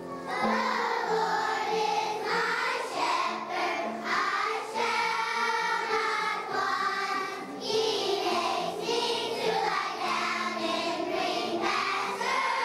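A choir of young children sings a song in unison with piano accompaniment. The singing comes in just after the start.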